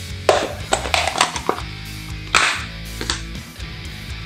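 Background music, over which a clear plastic food container is handled: a string of sharp plastic knocks and rustles as it is lifted off the robot and set down, loudest about a second in and again around two and a half seconds.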